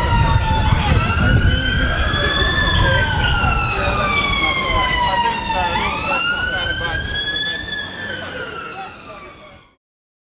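An emergency vehicle's siren wailing, its pitch slowly rising and falling, over low street rumble; the sound fades out near the end.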